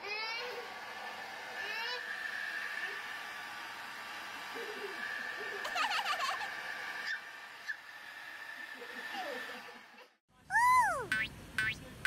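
Hand-held hair dryer blowing steadily, with a baby's short squeals and giggles over it a few times. Near the end the sound cuts to a loud springy cartoon sound effect.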